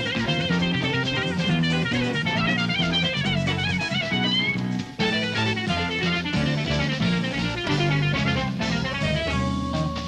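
Jazz-rock instrumental: an electric guitar lead line with wavering, bending notes over bass and drums. The music drops out for an instant about five seconds in, then carries on.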